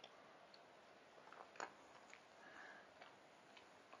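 Near silence: outdoor quiet with a few faint, scattered ticks.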